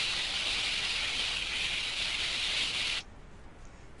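Sound effect from a children's science interactive of a sleigh sliding along a carpet track after a push: a steady hiss that cuts off suddenly about three seconds in.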